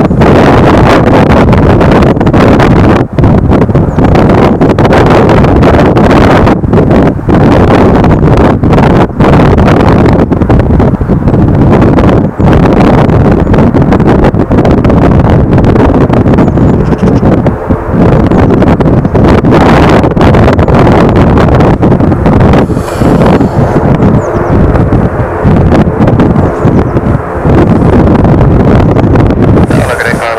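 Strong wind buffeting the microphone: a loud, continuous rumble with brief dips in level now and then.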